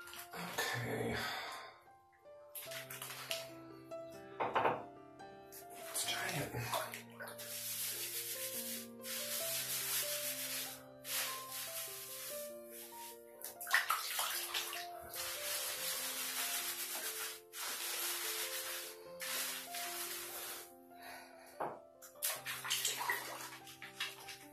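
Background music of slow, held notes over repeated bursts of running water and the splashing and rubbing of wet hair being lathered with a shampoo bar.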